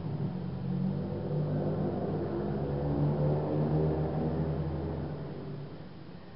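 A low engine hum, like a motor vehicle running nearby, that starts suddenly, holds a steady pitch and fades out near the end.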